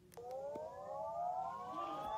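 A siren-like sound of several stacked tones starts suddenly and glides slowly upward in pitch, opening a song.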